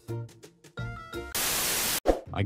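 Soft background music of mallet-percussion notes, then for the last half-second or so a burst of hissing static noise, louder than the music, that cuts off suddenly: a TV-static transition effect between clips.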